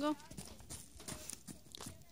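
Horse's hooves striking snow-covered paddock ground as she moves off at a trot: a run of uneven, dull hoofbeats.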